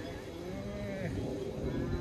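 Galloway cattle mooing: one arching, falling call in the first second, then a second, higher-pitched call starting near the end.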